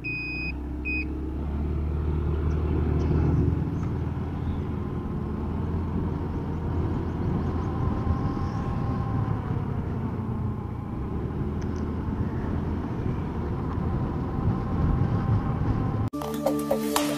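Motorcycle engine running steadily while riding, with a low rumble of wind and road noise. A high repeating beep sounds a few times and stops about a second in.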